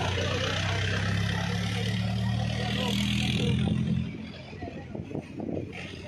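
A motor engine running with a steady low hum, along with a hiss, which stops fairly abruptly about four seconds in.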